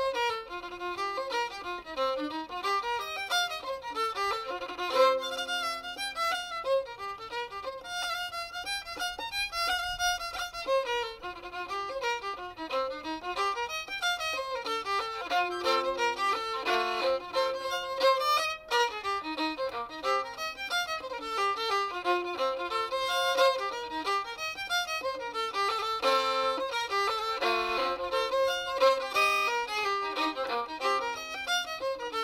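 Solo fiddle, tuned down a whole tone to F-C-G-D, bowing a traditional dance tune in a steady stream of quick notes.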